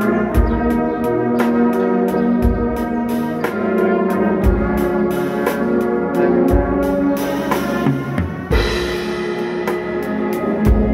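Brass band of tubas, euphoniums and cornets playing sustained hymn chords, with a bass drum beating about once a second.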